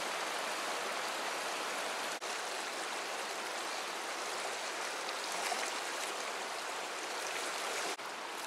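Steady rush of a shallow, rocky river's current running over and between boulders, with a brief break about two seconds in.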